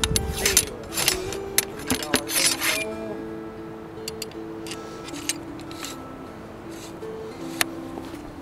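Steel ramrod scraping and clinking against the bore of a Brown Bess flintlock musket in a quick series of short strokes during the first three seconds, then a few single light clicks. Quiet background music with long held notes plays underneath.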